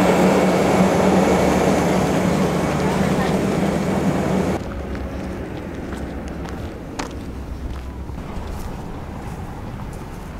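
Polar Bear Express passenger train rolling alongside the platform: a loud, steady rumble with a low hum. It cuts off abruptly about four and a half seconds in, leaving quieter outdoor sound with footsteps on a dirt road and a sharp click about seven seconds in.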